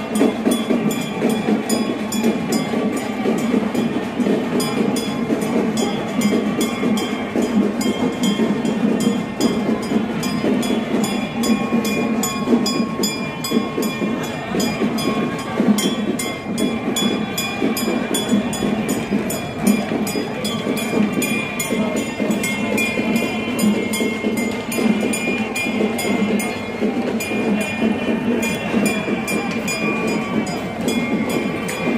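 Fast, unbroken procession drumming over crowd noise, with a high steady tone held above it.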